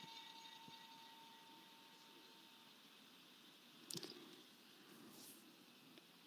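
Near silence: faint room tone, with a faint steady tone fading out in the first couple of seconds and a faint brief sound about four seconds in.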